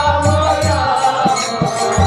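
Harmonium playing a sustained devotional kirtan melody. Low drum beats come about twice a second, and high, short clinking percussion keeps time over them.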